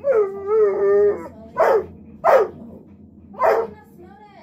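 A dog howls once in a long wavering call for about a second, then gives three short barks. It is begging for food from a person eating beside it.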